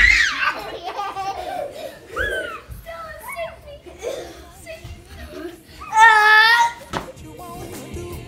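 A toddler and a woman laughing and squealing in play over background music, with a loud, high-pitched squeal about six seconds in.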